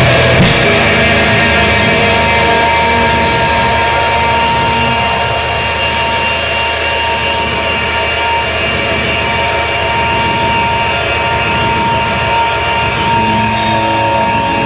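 Live rock trio of electric guitar, bass guitar and drum kit playing loud and dense, with crashing cymbals. A single high tone is held steadily from about a second in to the end.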